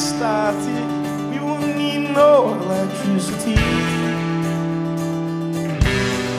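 Live indie rock band playing, with strummed acoustic guitar and electric guitars holding sustained chords and a few bending notes. There is a drum hit about three and a half seconds in and another near the end.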